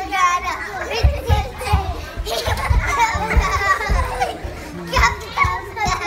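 Young girls' excited voices shouting and laughing as they jump around together, with low thumps of their landings at irregular intervals.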